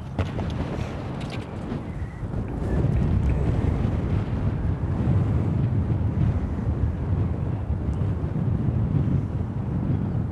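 Wind buffeting the microphone: a dense low rumble that grows louder about three seconds in and stays up. A brief sharp tick comes at the very start.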